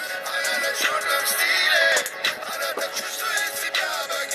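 Pop song playing: autotuned singing over a steady beat.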